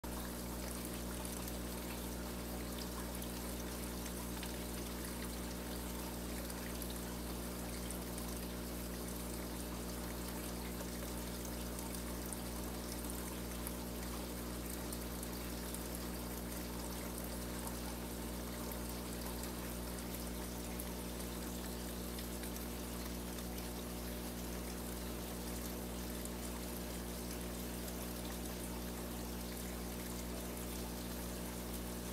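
Turtle-tank water filter running: a steady trickle and pour of water with a low, even hum underneath.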